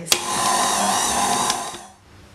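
KitchenAid Artisan stand mixer running with its dough hook, kneading bread dough: a steady motor whir that starts with a click and fades out just before the end.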